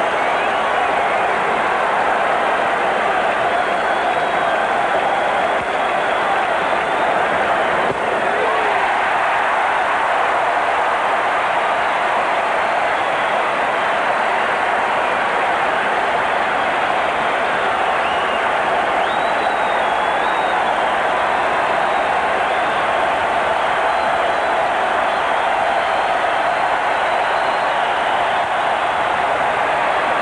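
Steady noise of a large stadium crowd under a dome, a dense unbroken din that neither swells nor drops.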